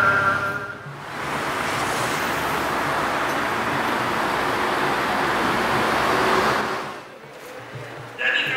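Steady, even rush of road traffic noise from about a second in, fading out near the end, with quiet background music beneath it.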